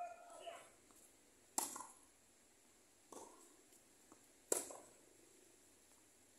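Tennis ball struck with rackets during a rally: two sharp hits about three seconds apart, with a softer knock between them.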